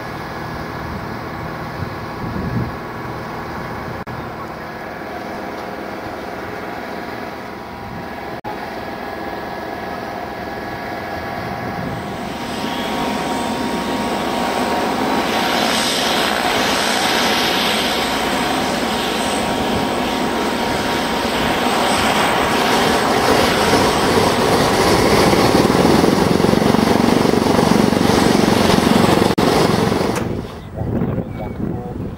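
Douglas DC-6A's radial piston engines and propellers running, getting steadily louder and rougher through the second half as the engines are run up.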